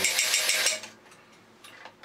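1969 Mr. Astronaut battery-operated toy robot's motor, gearing and clicker noisemaker running, a rapid even clicking rattle as it walks, cutting off suddenly a little under a second in; after that only a few faint clicks.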